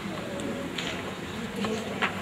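Quiet ambience of a large hall: faint audience murmur and room noise with a few small clicks.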